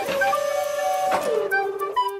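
Cartoon machine whirring sound effect: it starts suddenly and holds a steady pitch, then drops lower about halfway through. Light background music with a flute-like melody plays under it.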